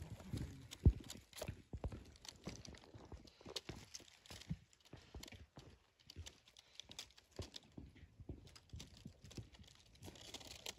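Dry leaf litter crackling and rustling in a faint, irregular run of small clicks, with one sharper knock about a second in.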